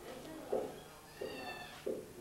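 A single high-pitched cry, held at a level pitch for under a second, about a second in, with short low sounds around it.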